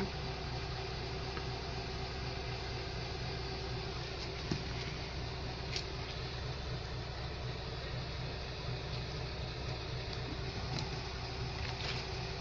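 Steady background hum with a faint steady tone in it, and a few faint clicks and taps about halfway through.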